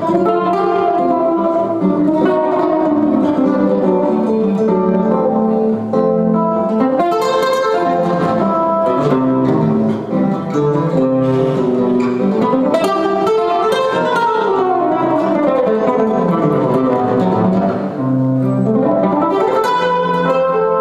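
Three acoustic guitars playing jazz together, notes plucked over a chordal accompaniment. In the second half, fast runs sweep down and then climb back up.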